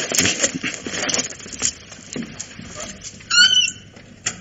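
Soft movement noises, then about three seconds in a short, high, wavering squeak of a door hinge as someone goes through: a radio-play sound effect.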